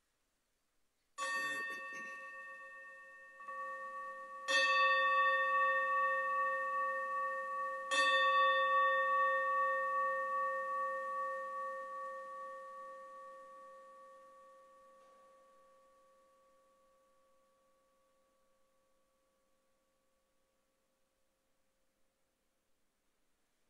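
A bowl-shaped altar gong struck three times, about three and a half seconds apart, with a lighter tap between the first two; its deep, steady ring builds with each strike and then slowly fades away. The strikes mark the elevation of the chalice at the consecration of the Mass.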